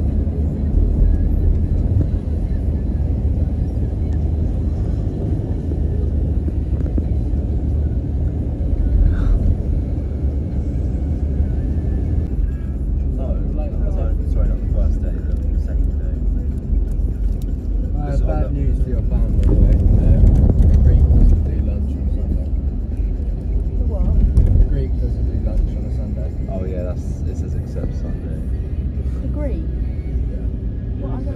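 Car cabin noise while riding in traffic: a steady low rumble of engine and tyres on the road, swelling briefly about twenty seconds in.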